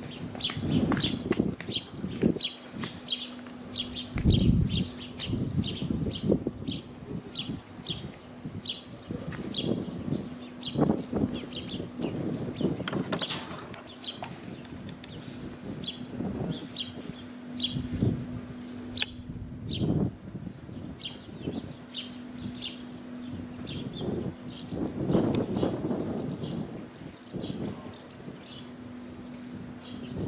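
Small birds chirping over and over, two or three short high chirps a second, over a low, uneven rushing of sea waves and breeze and a steady faint hum.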